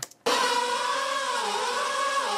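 Playback of a metal mix: a drum kit with cymbals under a held vocal line, starting abruptly about a quarter second in. The vocal is brightened with a tilt EQ to push it forward.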